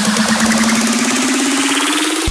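Big room EDM build-up: a fast, rapidly repeating synth pulse whose pitch rises slowly, with the bass thinning out to nothing, the tension-building riser before a drop.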